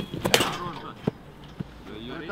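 A football struck hard in a penalty kick, a sharp thud right at the start. A short shout follows, then two light knocks.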